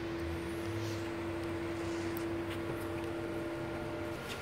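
Steady low background hum with a faint, single steady tone that stops about four seconds in; no distinct tool or impact sounds.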